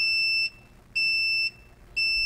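Ricoma heat press timer beeping: two steady, high-pitched half-second beeps one second apart as it counts down the last seconds of the press time.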